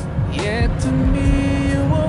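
A steady boat engine rumble heard from inside the cabin, under a slow song with a singer holding a long note.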